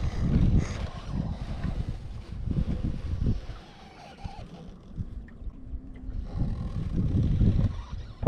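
Wind buffeting the microphone on an open boat: a low, uneven rumble that eases off around the middle and builds again near the end.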